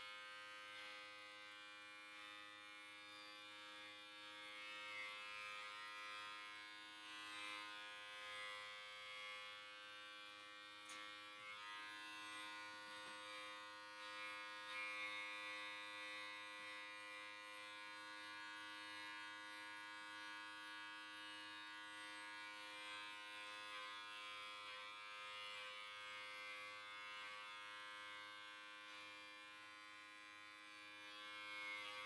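Electric hair clippers buzzing faintly and steadily as they are run over a man's close-cropped scalp and the nape of his neck.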